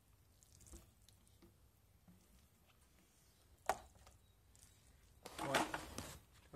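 Faint rubbing of a Moerman Liquidator squeegee blade drawn across soapy window glass. There is one sharp click a little past the middle, and a voice near the end.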